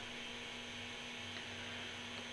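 Faint room tone: a steady hiss with a low, steady hum underneath.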